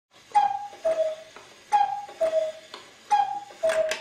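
Cuckoo clock calling three times, each call two falling notes, high then low, with a click from the bellows mechanism at the start of each note; the clock is striking three o'clock.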